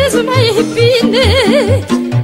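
Romanian folk music (muzică populară): an ornamented lead melody with a wide, wavering vibrato over a steady bass-and-chord accompaniment.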